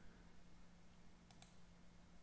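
Near silence with a quick double click of a computer mouse about a second and a half in.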